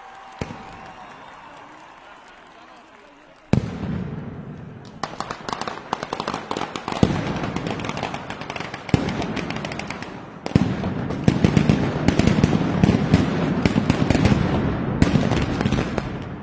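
Mascletà firecrackers: a single sharp bang about half a second in, then, from about three and a half seconds, strings of gunpowder firecrackers (masclets) going off in rapid crackling succession. The crackling surges louder in waves and is heaviest near the end.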